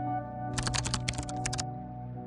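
A quick run of computer keyboard typing clicks lasting about a second, over soft background music with sustained tones.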